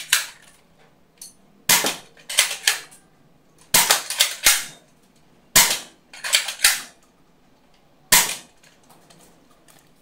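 Spring-powered foam dart blaster (Dart Zone Storm Squad) firing four shots about two seconds apart. Each shot is a sharp snap followed within a second by one or two lighter clicks and knocks.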